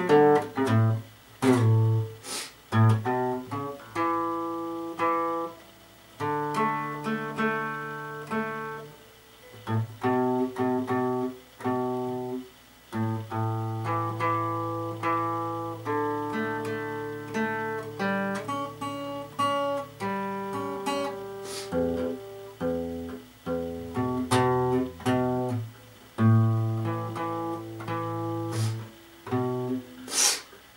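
Yamaha acoustic guitar played with the fingers: plucked single notes and chords ring out in short phrases, with brief pauses between them.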